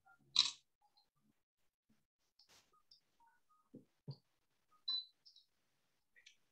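Mostly quiet, with a short noise about half a second in and a few faint, scattered clicks and small knocks after it.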